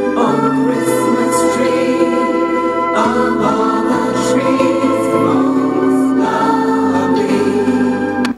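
A group singing a Christmas song about a Christmas tree over a steady instrumental accompaniment with a moving bass line.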